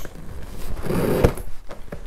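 Cardboard gift packaging being handled: a rustling scrape around the middle with a sharp tap near its end, and a few light knocks.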